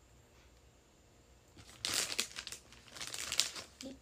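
Crinkling and rustling of something being handled close to the microphone, in two stretches about a second apart after a short quiet start.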